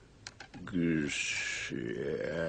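A man's voice making strained, garbled nonsense sounds: a hum, a long hissing "kshh", then more humming, like someone stammering over an unpronounceable name. A few quick faint clicks come just before it.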